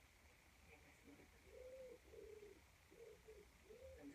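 A pigeon cooing faintly in a short run of soft, low coos from about a third of the way in.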